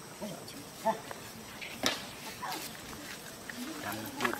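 A few brief, scattered macaque calls, short squeaks and coos, with a sharp click about two seconds in.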